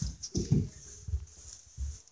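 Soft muffled bumps and rustling close to the microphone, as a phone is handled against a hand and fabric, with a few low thuds about half a second in and near the end.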